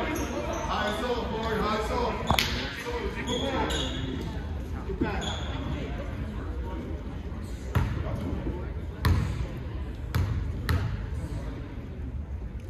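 Basketball bouncing on a gym floor: a few scattered sharp thuds, one about two seconds in and a cluster in the second half, over voices echoing in a large gym.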